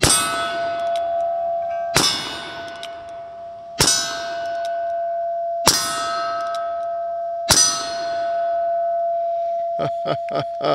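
Five shots about two seconds apart from an 1874 Colt Single Action Army revolver, each followed by steel targets ringing with a long, steady ring that carries on between shots. A few light clicks come near the end.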